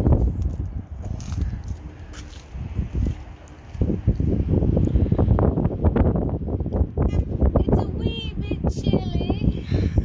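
Wind buffeting the microphone in gusts, a dull low rumble that eases a few seconds in and then comes back strongly.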